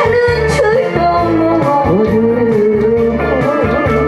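A woman singing a Korean trot song live into a handheld microphone, holding notes with a wide vibrato, over instrumental accompaniment with a steady beat and guitar.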